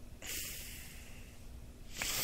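A man breathing audibly into a close microphone: one long breath starting a moment in and fading over about a second, and another beginning near the end.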